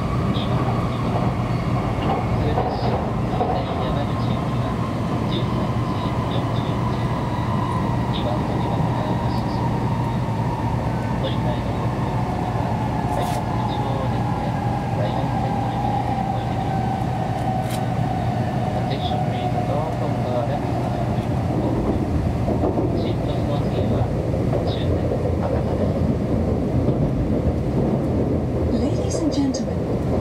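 Steady rumble and rush of a Kyushu Shinkansen bullet train heard from inside the passenger car at speed, over a low steady hum. A whine falls slowly in pitch through the first two-thirds as the train slows for its stop.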